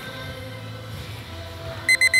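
Background music playing steadily; near the end a digital match timer starts beeping in quick, evenly spaced high pulses, signalling that the bout's time has run out.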